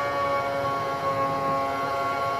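Formula One car engine from onboard footage, held at a steady pitch as the car climbs the hill out of Eau Rouge, played through a lecture theatre's loudspeakers.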